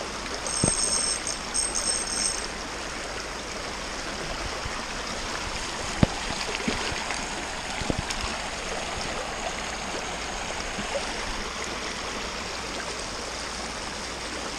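Shallow creek water rushing steadily over a rocky riffle, with a few short sharp knocks, the loudest about six seconds in.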